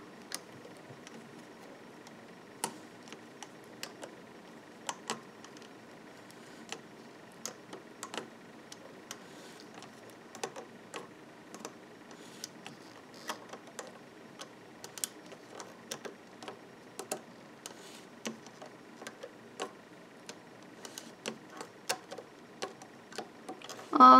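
Faint, scattered clicks and ticks of a metal loom hook against the clear plastic pegs of a rubber-band loom as the bands are lifted and pulled over.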